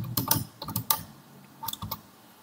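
Computer keyboard typing: a quick run of keystrokes in the first second, then a couple more near the end.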